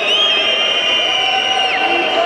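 Crowd noise in a gym during live basketball play, with a high-pitched squeal held for about a second and a half that drops off near the end.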